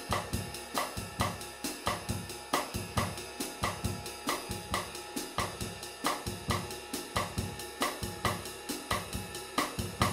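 Drum kit playing a bossa nova groove: steady stick strokes on the ride cymbal over a cross-stick (rim click) pattern on the snare in the baião rhythm, with a soft bass drum underneath.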